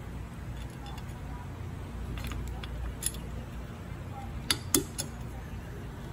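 Small metallic clicks and clinks of a nut and washer on a threaded bicycle axle as it is set into the fork dropouts by hand, with a few sharper clicks around the middle.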